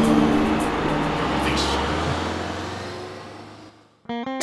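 City bus engine running with a low rumble as the bus pulls away, its sound fading out over the last second or so.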